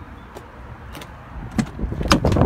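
A truck's cab door being opened: a few faint clicks, then a latch thump near the end as the door swings open.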